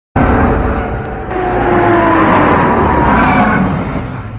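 SUVs driving, a loud steady engine and road noise with a faint tone that drifts slowly in pitch.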